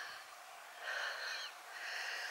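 A woman's breathing close to the microphone: a few soft, breathy exhalations, one at the start, one about a second in and one near the end.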